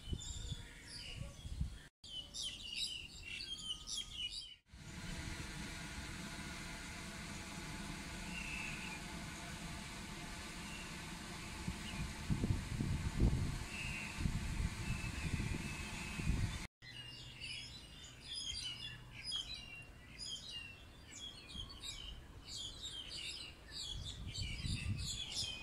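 Many small birds chirping and twittering in quick, overlapping calls, cut off abruptly in a few places. From about five to seventeen seconds in, the birdsong gives way to a steady low hum with only a few faint calls.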